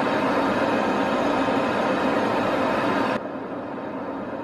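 Steady in-flight aircraft noise, engines and rushing air, recorded from inside a plane. About three seconds in it cuts abruptly to a quieter, less hissy steady noise from a second aircraft's cockpit.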